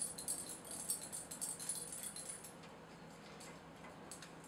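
A pet scratching at fleas, its collar tags faintly jingling in quick rattling ticks that stop about two and a half seconds in.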